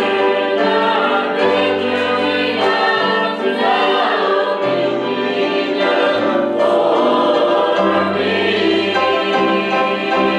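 Group singing of a gospel hymn with piano and guitar accompaniment and a moving bass line.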